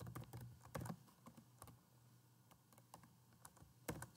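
Faint computer keyboard typing: a quick run of key clicks over the first couple of seconds, then a pause, and one more click near the end.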